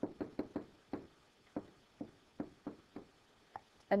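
Stylus tip tapping and clicking on a tablet or touchscreen surface while handwriting: a string of short, sharp, irregularly spaced clicks, several a second.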